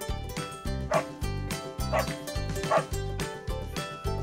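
Upbeat intro jingle music with a dog barking three times, about a second apart, mixed into it.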